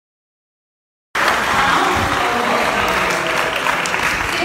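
Silence for about a second, then an audience clapping, starting abruptly and holding steady and loud.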